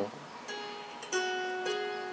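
Handmade ten-string kantele-style zither with metal strings and an African mahogany and palo rojo body being plucked: a soft note about half a second in, then a louder note just after a second, followed by another, each ringing on with a long, clear bell-like sustain.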